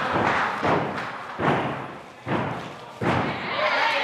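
A gymnast's feet landing on a wooden balance beam, several dull thuds spaced less than a second apart, the loudest about one and a half seconds in.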